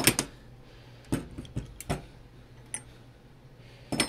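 A few sharp metal clicks and clinks at irregular spacing as the maglock's steel armature plate is handled against the magnet's aluminium housing, the loudest at the very start and another near the end.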